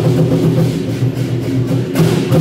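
Chinese war drums (large barrel drums) beaten in a steady beat, with hand cymbals clashing along with the strokes.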